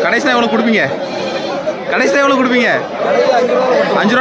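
Goats bleating: a few long, wavering calls, one near the start and another about two seconds in, over people's chatter.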